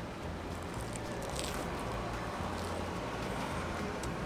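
Steady city-street background with a low traffic rumble. About a second and a half in there is a faint crunch as a bite is taken from deep-fried curry bread with a crisp crust.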